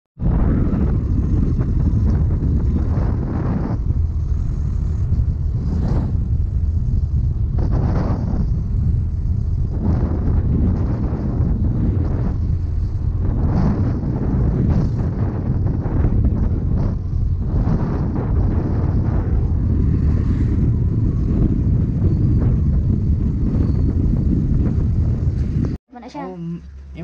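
Wind buffeting an action camera's microphone on a moving motor scooter: a heavy, steady low rumble with irregular gusts, the scooter's engine and road noise running beneath it.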